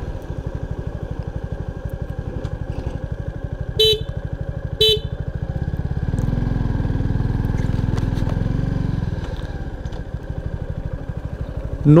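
Suzuki Gixxer 250's single-cylinder engine running at low road speed, its note swelling louder for a few seconds in the middle. Two short horn beeps sound about four and five seconds in.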